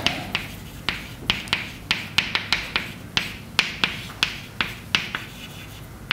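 Chalk writing on a blackboard: a run of sharp, irregular taps, about three a second, as the chalk strikes the board at each stroke, with faint scratching between them.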